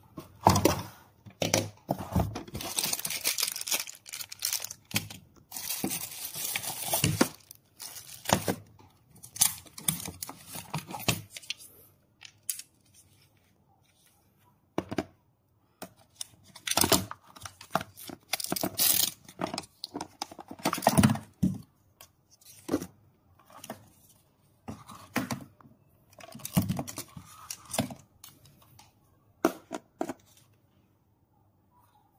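Hands handling the plastic monitor, sun visor and cable of a fish camera kit in its fabric case: irregular bursts of rustling, scraping and clicking, with a few quiet gaps.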